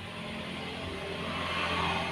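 A soft rushing noise that slowly swells to a peak near the end and then fades, over a faint steady low hum.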